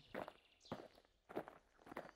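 Soft footsteps, four light steps about half a second apart.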